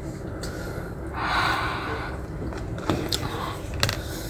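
A person's breathy gasp or exhale about a second in, while eating, followed by a few sharp clicks of a plastic takeaway tray and spoon being set down on a table near the end.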